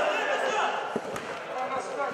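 A man talking, with two sharp knocks about a second in, a football being kicked on the indoor pitch.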